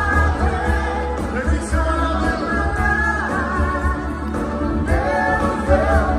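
Live rock-pop band playing, with drums, bass, electric guitar and keyboards, while a vocalist sings long held notes; recorded from within the audience.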